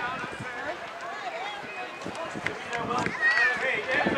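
Indistinct, overlapping voices of players and spectators calling out around a youth baseball field, with a few brief sharp clicks.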